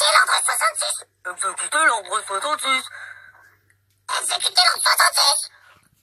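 Speech only: high-pitched, effects-altered character voices played back through a tablet's speaker, in three short spoken bursts.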